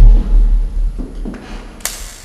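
Low rumbling thuds of handling noise on the recording microphone, loudest right at the start, with a few clicks, the sharpest near the end.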